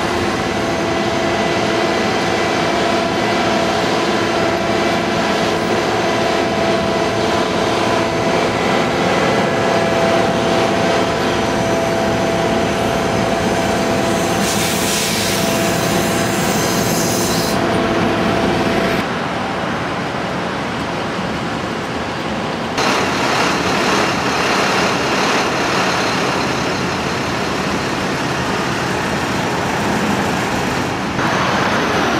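Busy city street traffic: buses and cars running through an intersection, with a steady engine hum carrying several held tones. A high hiss lasts about three seconds midway, and the traffic noise turns denser and louder in the last third.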